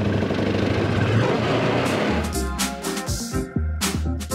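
Side-by-side utility vehicle engine running as it drives. About halfway through, upbeat background music with a steady beat comes in and carries on.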